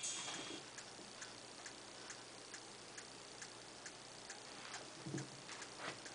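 Faint, even ticking, a little over two ticks a second, after the tail of music fades out in the first half second. A couple of soft low knocks come near the end.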